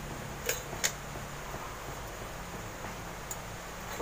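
Two light metallic clicks in quick succession, then a fainter one, as a ceiling-fan motor's stator and housing are handled on a threaded steel rod, over steady background noise.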